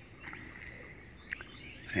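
Faint night-time outdoor ambience with a few short, faint chirps and a single sharp click about a second and a third in.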